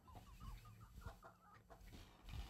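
Near silence with faint, stifled laughter: a run of short, squeaky giggles.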